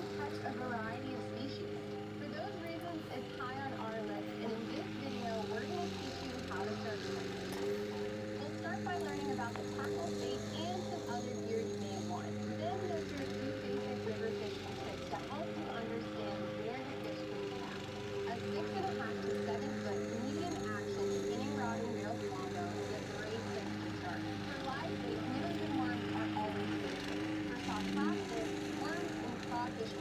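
Walk-behind gas lawn mower engine running at a steady speed throughout, with voices over it.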